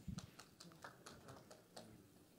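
Near silence in a room, broken by a few faint scattered clicks and taps.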